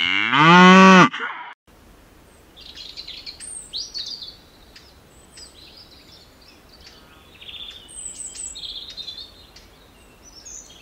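A cow moos once, a loud call of about a second and a half whose pitch drops at the end before it cuts off suddenly. Then a small songbird chirps and twitters in short high phrases.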